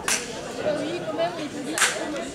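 People talking in a hall between songs, with two short, sharp hissing bursts, one at the start and one near the end.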